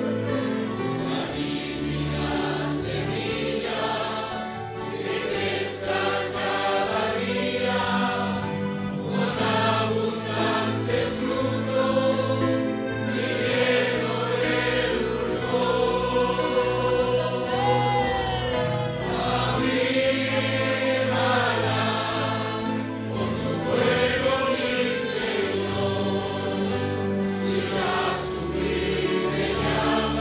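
A congregation singing a Spanish-language hymn together over low sustained accompaniment notes, passing from a verse into the chorus partway through.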